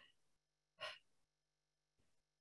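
Near silence, broken just under a second in by one short, soft breath from a woman.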